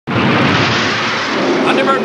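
Loud, steady noise of spacecraft engines at launch, a cartoon sound effect. It starts abruptly, and a man's voice comes in near the end.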